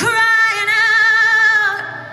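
Live acoustic band music: a female voice holds one long high note with vibrato over soft guitar accompaniment, the note fading out near the end.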